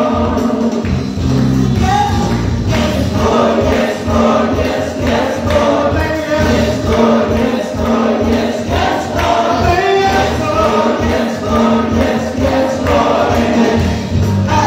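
A church praise team singing a gospel worship song together into microphones, with a steady beat and bass underneath.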